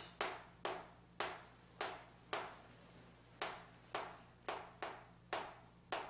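Chalk tapping and scraping on a chalkboard as words are written, in short separate strokes at about two a second.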